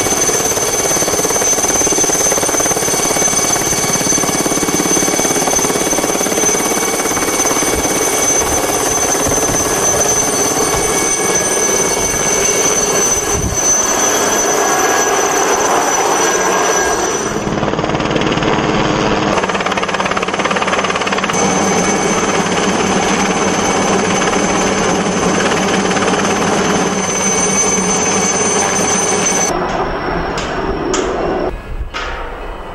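Aérospatiale SA 315B Lama helicopter at close range: a steady high-pitched turbine whine over the fast chop of the main rotor. The whine drops out for a couple of seconds past the middle.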